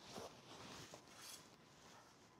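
Near silence, with a few faint, brief soft rustles of enoki mushrooms being pulled apart by hand.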